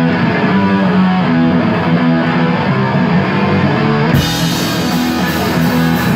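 A live heavy metal band playing a song's intro: an electric guitar and bass riff, with the drums and crashing cymbals coming in about four seconds in.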